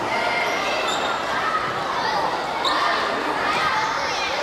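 Many girls' voices shouting and calling over one another, echoing in a large gymnasium hall as a dodgeball game is played, with the odd ball or foot thud on the wooden court.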